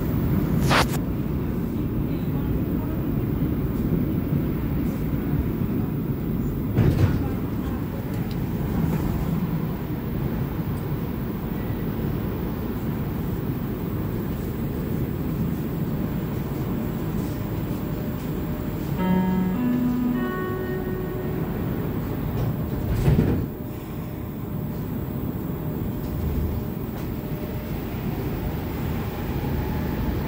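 Montreal Metro Azur rubber-tyred subway train running through a tunnel, a steady low rumble heard from inside the car. A few sharp knocks and jolts cut through it, the loudest about 23 seconds in, and a brief two-note tone sounds about two-thirds of the way through.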